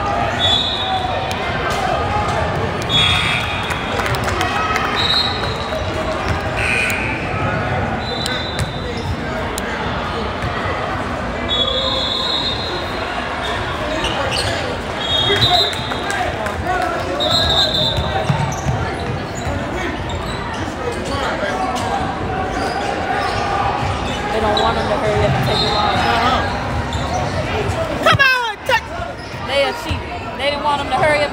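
Basketball bouncing and sneakers squeaking in short bursts on a hardwood gym floor during a game, under steady spectator chatter in a large hall.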